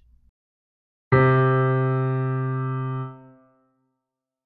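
A single low piano note, struck once about a second in, held for about two seconds and then fading out: the low-pitch example in a high-or-low listening exercise.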